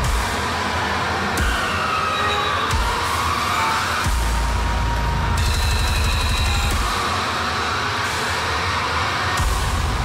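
Loud, dense metal music with distorted guitars. A deep bass layer drops in and out in sections, heaviest from about four to seven seconds in.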